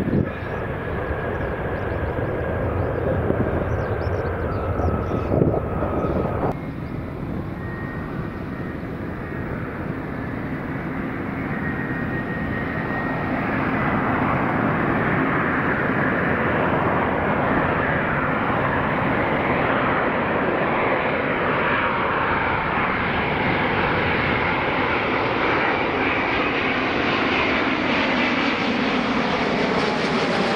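Airbus A350 jet airliner touching down, its engines running loud with a high whine, until a cut about six seconds in. Then a Thai Airways Airbus A350's Rolls-Royce Trent XWB turbofans on final approach, their noise swelling over the next several seconds and then holding loud and steady, with a whine that slowly falls in pitch as the aircraft comes close overhead.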